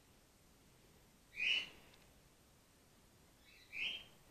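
Grey-headed flying-fox pup giving two short, high squeaks, one about a second and a half in and one near the end.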